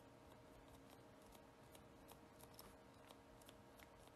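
Near silence with faint, irregular soft ticks of a round makeup sponge being dabbed onto a gel-painted nail tip.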